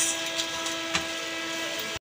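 A steady machine hum made of several fixed tones, with a faint click about a second in.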